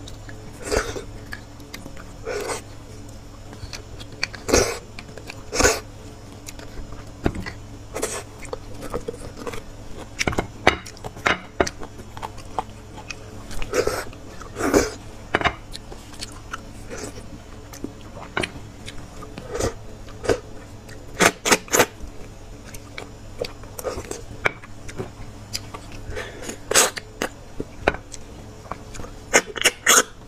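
Close-miked eating sounds of a person eating roasted beef marrow bones: sucking marrow out of the bone, chewing and lip smacks in short irregular bursts, with a quick run of sharp clicks about two-thirds of the way through.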